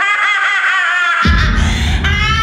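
A song sung with heavy vibrato, played from a cassette tape in a stereo cassette deck. About a second in, a deep low rumble suddenly sets in beneath it, with held tones continuing above.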